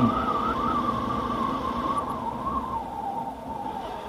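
Motorcycle riding along a road: engine and road noise with a high, slightly wavering whine that drifts down in pitch and fades a little over the first three seconds, then holds steady.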